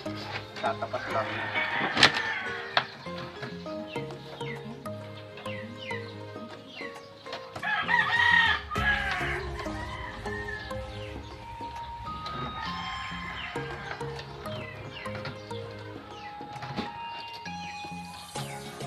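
A rooster crowing, loudest about eight seconds in, over background music of long held notes.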